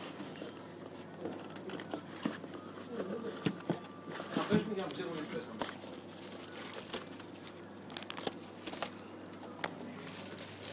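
Cardboard box flaps and plastic wrapping rustling and crinkling as hands handle a boxed, plastic-wrapped synthesizer module, with scattered short clicks and knocks throughout.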